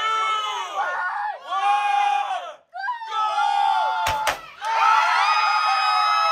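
A group of people shouting together in long drawn-out calls, then two sharp pops of hand-held confetti cannons about four seconds in, followed by a crowd screaming and cheering.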